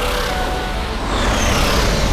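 Cartoon sound effects of a meteor shower rushing past: a steady rushing rumble, with several falling whistles and a slight swell from about a second in.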